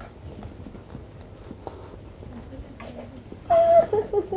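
A woman's short pained cry near the end, one held note that falls away, as a tender point on her lower back is pressed; before it, only quiet room tone.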